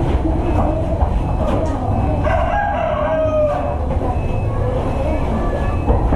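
A rooster crowing, one drawn-out call falling in pitch at its end, starting about two seconds in, over a steady low rumble.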